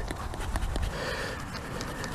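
Light rain falling as a faint steady hiss, with a low rumble of wind on the microphone and a few small clicks.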